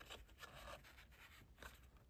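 Near silence with faint rustling and scraping of string and card being handled, and a small click near the end.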